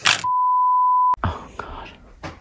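A single steady electronic bleep tone, just under a second long, set in dead silence and cut off with a click, followed by faint room noise.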